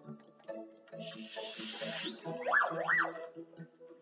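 Light children's cartoon music with short plucked notes. About a second in comes a hissing swoosh, then near the end two quick up-and-down whistle glides, a cartoon 'boing' sound effect.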